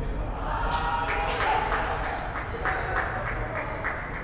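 Hands clapping in a steady run, about four claps a second, with a short burst of voices near the start.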